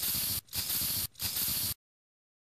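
Intro sound effect for an animated logo reveal: three short bursts of hissing noise, each about half a second long, the last cutting off sharply.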